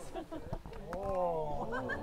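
Wordless vocalising from women performers: a voice sliding up and down in pitch for under a second, about a second in.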